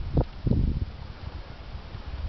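Wind rumbling on the camera microphone with handling noise, including two short thumps in the first half second.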